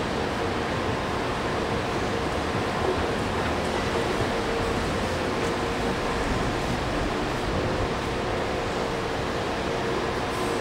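Steady hiss and low hum of air conditioning in a large indoor hall, with a faint steady tone running through it.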